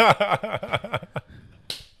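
A man laughing hard into a handheld microphone: a quick run of pulsed laughs that die away after about a second, followed by a short breathy sound near the end.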